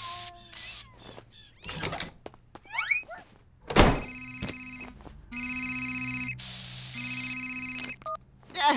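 Cartoon sound effects: short hisses from an aerosol spray can in the first second, a couple of rising squeaky glides, and a single thunk just before four seconds in. Then a mobile phone rings three times, a pulsing electronic ringtone.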